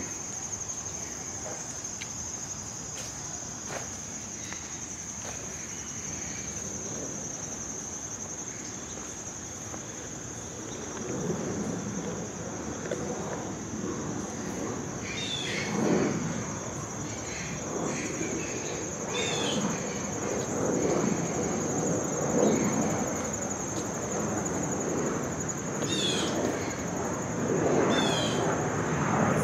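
A steady, high-pitched insect chorus drones throughout. From about ten seconds in, footsteps on a dirt path join it, with a few short chirps over the top.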